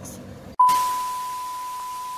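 TV 'no signal' test-pattern sound effect: a steady test-tone beep over loud static hiss, cutting in suddenly about half a second in.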